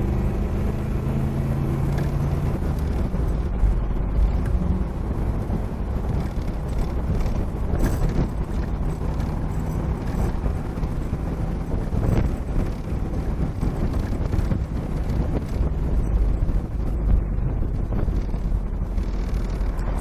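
1962 Corvette's 300 hp 327 cubic-inch small-block V8 running as the car drives at highway speed, heard from the open convertible cockpit along with steady wind and road noise. A distinct engine note shows for about the first three seconds, then mostly wind and road noise.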